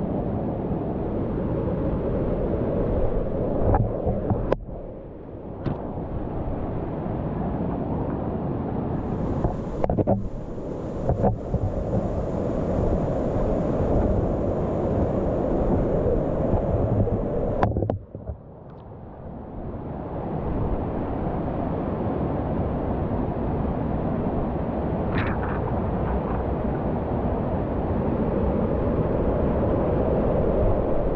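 Waterfall and fast white water rushing close to the microphone in a rocky gorge. There are a few sharp knocks, and the sound briefly drops away twice, after about four seconds and again near eighteen seconds.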